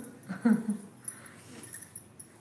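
A short, pitched voice sound about half a second in, a brief vocalisation like a whimper or giggle. Glass bangles clink faintly as the hands rub the feet.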